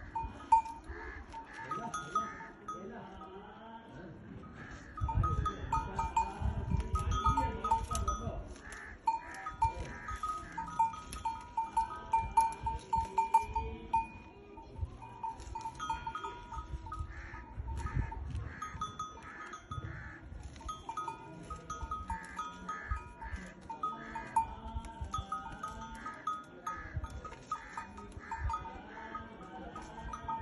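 Small metal bells on livestock clinking irregularly and repeatedly. A low rumble comes in about five seconds in and lasts a few seconds.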